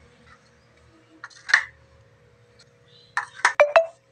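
Hollow-core PVC door offcuts knocked together and set down on a hard floor: a couple of sharp plastic clacks about a second and a half in, then a quick cluster of three or four near the end.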